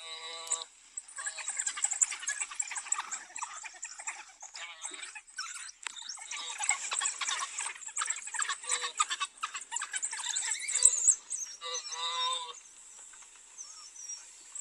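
A pack of African wild dogs keeping up a shrill, rapid twittering and chirping at a kill. The chatter swells to its loudest about eleven seconds in. A short pitched cry comes at the start and again about twelve seconds in.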